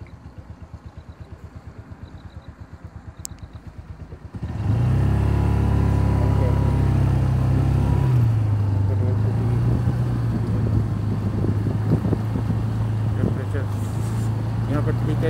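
Motorcycle engine running, at first a quiet low pulsing. About four and a half seconds in it suddenly gets much louder as the bike pulls away, then runs on loud and steady with a slight dip in pitch about eight seconds in.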